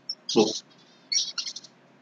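A small bird chirping: a few short high chirps, the last a quick trill about a second in.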